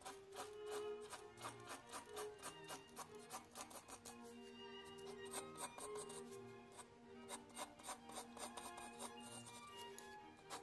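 Rapid short strokes of a 2 mm mechanical pencil with 2B lead scratching across sketch paper while hatching fine detail, over soft background music.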